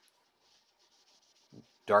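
Faint rubbing of a paper towel wiping tung oil across a walnut surface.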